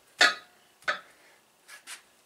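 Three short, sharp knocks or clinks from handling an upright hydraulic cylinder, the first the loudest with a brief ringing after it, then a lighter one and a quick double scrape near the end.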